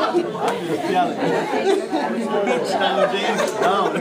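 Chatter of several people talking over one another.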